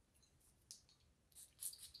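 Faint, scattered clicks and taps as a Chanel Coco Noir perfume bottle is handled before it is applied to the wrist, a few single clicks and then a quick cluster near the end.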